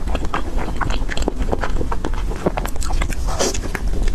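Close-miked eating sounds of biting and chewing a soft, powder-dusted pastry: a dense run of irregular wet mouth clicks and smacks, with a low steady rumble underneath.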